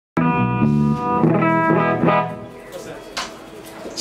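Electric guitar through an amplifier playing a quick run of notes for about two seconds, which then ring down and fade.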